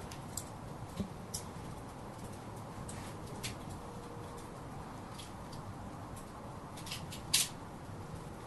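Faint steady hiss of room tone, dotted with small sharp high-pitched clicks or ticks at irregular intervals, the loudest a little before the end.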